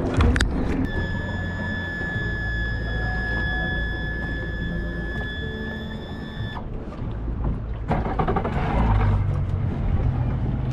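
A steady, high-pitched electronic buzzer tone sounds for about six seconds and cuts off abruptly, over a continuous low rumble. Wind and water noise rise near the end.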